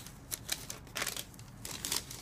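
Paper receipt rustling and crinkling as it is handled, in irregular small crackles and clicks.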